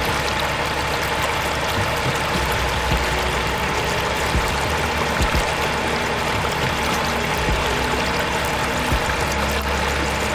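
Water pouring steadily from a miniature pump's small outlet pipe into a little concrete tank, with the pump's small motor running underneath as a faint steady hum.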